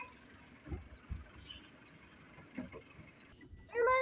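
Faint, scattered chirps of small birds outdoors, with a couple of low thumps about a second in. Near the end a child's voice cries out loudly.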